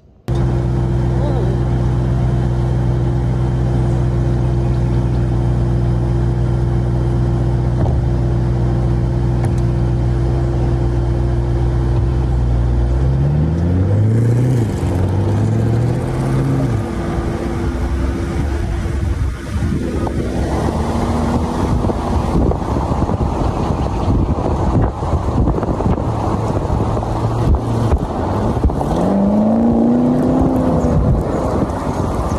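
Porsche Panamera Turbo's twin-turbo V8 idling steadily, then revved in a few quick rises and falls a little before halfway. Later it pulls away and runs under load with wind and road noise, accelerating again near the end.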